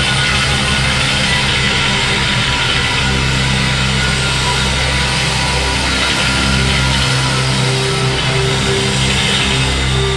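Live rock band playing an instrumental passage without vocals: distorted electric guitar, bass and drums, loud and steady, with sustained low notes through the second half.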